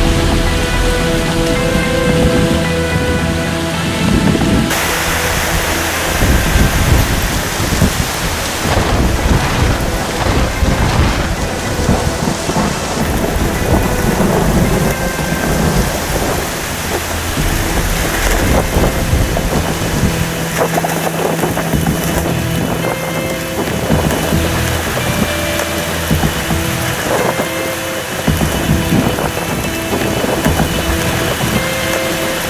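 Night thunderstorm: heavy rain and wind hissing, with thunder rumbling. The rain's hiss grows stronger about five seconds in.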